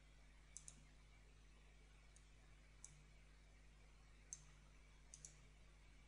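Faint computer mouse clicks over near silence: seven short clicks, including a quick double click about half a second in and another about five seconds in.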